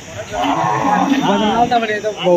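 A bull lowing: one loud call lasting about a second and a half, over the chatter of a crowd.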